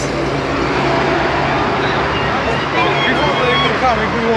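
A vehicle engine running steadily over outdoor traffic noise, its low hum fading out about three seconds in, with distant voices near the end.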